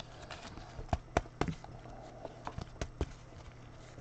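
Clear plastic top loader being handled as a trading card is slipped into it: a string of light plastic clicks and taps between about one and three seconds in.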